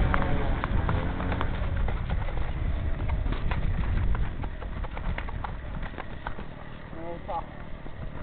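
A horse moving and stamping under its rider, with irregular hoof knocks and tack clicks over a steady low rumble.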